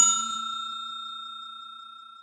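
Notification-bell 'ding' sound effect from a subscribe-button animation: a single bell-like chime fading away steadily.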